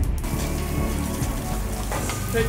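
Heavy artificial rain from an overhead spray rig, pouring down steadily with a deep rumble underneath.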